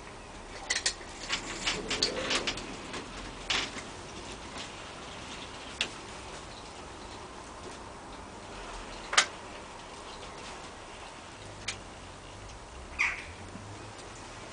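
Mouth sounds of a person tasting a spoonful of chilli sauce: scattered short lip smacks and tongue clicks, the loudest about nine seconds in.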